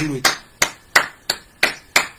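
A run of six sharp knocks at an even pace of about three a second, each short and fading quickly.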